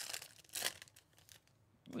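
Foil wrapper of a 2021 Bowman Chrome baseball card pack being torn open and crinkled by hand. There is a short rip at the start and a louder one about half a second in.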